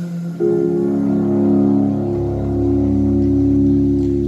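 Live concert music: a held instrumental chord comes in about half a second in and sustains, with a deep bass note joining about two seconds in.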